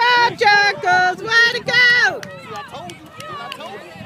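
A high-pitched voice yelling a run of about five drawn-out syllables, like a chant or cheer, over the first two seconds. Fainter shouting voices follow.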